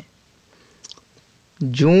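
Quiet room tone with one faint short click just under a second in; a man's speech starts again near the end.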